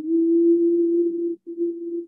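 Shakuhachi bamboo flute playing a low, held, almost pure note, with a short break about one and a half seconds in before the note sounds again.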